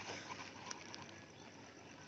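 Faint outdoor background, with a fast, faint, high ticking and a couple of small clicks about a third of the way in.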